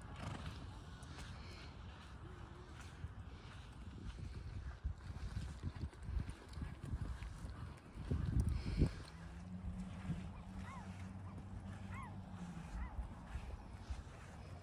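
A horse's hooves thudding on wet beach sand, loudest about eight seconds in, over wind rumbling on the microphone. Later, a few short rising-and-falling bird calls.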